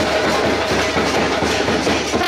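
Loud drumming blended with crowd noise into a dense, steady clatter.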